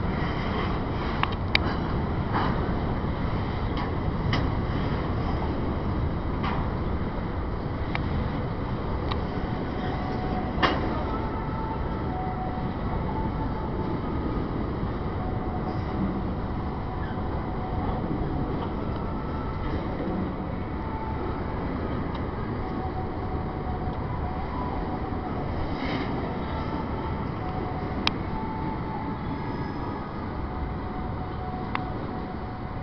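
Florida East Coast Railway container freight train rolling slowly past over a steel railroad bridge: a steady rumble of wheels on rail with a sharp metallic clank now and then.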